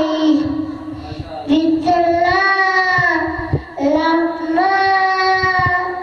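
A young boy chanting an unaccompanied devotional recitation into a microphone, his high voice holding long, drawn-out notes in phrases of a second or two, with short breaks between them.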